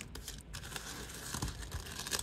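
Soft rustling and scraping of hands sliding loose metal paper clips across a tabletop, with a few faint clicks as the clips touch.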